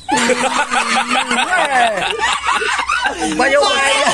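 A man and an elderly woman talking, breaking into laughter near the end.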